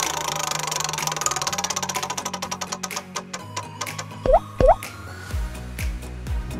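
Prize-wheel spin sound effect: a fast run of ticks that slows down over about three seconds as the wheel comes to rest, over background music. About four seconds in come two short, loud rising swoops.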